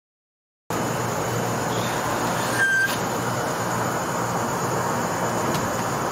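Dead silence for a moment, then a steady background hiss and rumble cuts in abruptly and holds evenly, with a brief faint tone and a light click about three seconds in.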